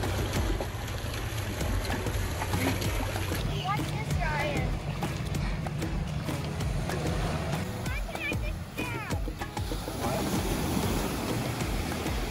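Background music with a steady bass line that changes note every few seconds. Over it come children's voices calling out, about four seconds in and again near eight seconds, and water splashing in shallow surf.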